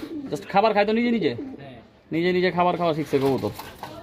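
Domestic pigeons cooing in a loft.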